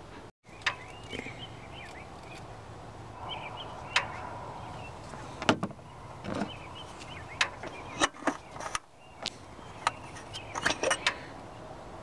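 Scattered sharp clicks and knocks, several seconds apart, over a faint steady background: hands and a fluid bottle being handled while the power steering reservoir is topped off.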